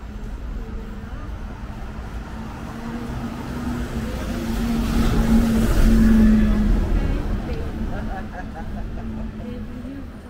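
Road traffic on a city street: a steady engine hum with a vehicle passing, swelling to its loudest about six seconds in and then fading.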